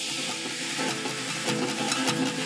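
Background music: a rhythmic tune with percussion hits over a high hiss, the beat growing busier about a second and a half in.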